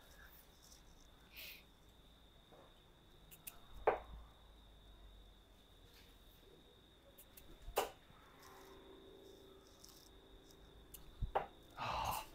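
Three steel-tip darts striking a sisal bristle dartboard one after another, each a short sharp thud, about four seconds apart. A faint steady high-pitched tone runs underneath.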